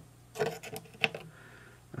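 Faint handling noise: clicks and rubbing of a red hook-clip test lead being handled on an amplifier's tag board, with one sharper click about a second in.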